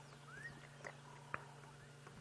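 Quiet dawn bush: a few faint, distant bird chirps, one a short rising note about half a second in, over a low steady hum.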